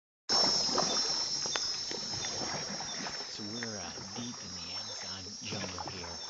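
Night-time Amazon jungle insect chorus: a steady high buzzing and trilling of crickets and other insects, with a few knocks in the first seconds and a man's voice coming in about halfway through.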